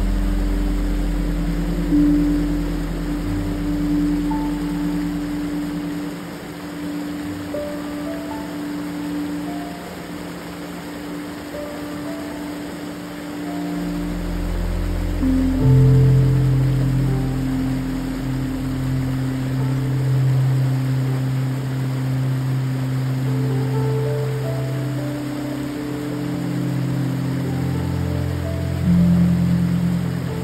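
Slow ambient synth music with long held chords that shift every few seconds, a deep low chord coming in about halfway. Under it runs the steady rush of a small creek waterfall.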